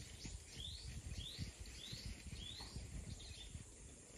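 A bird calling outdoors: four short rising notes, about one every two-thirds of a second, faint over a low rumble.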